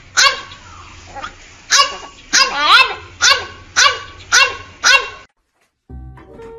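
A French bulldog barking in a string of about eight short, pitched, yelping barks that rise and fall in pitch. The barks stop abruptly about five seconds in.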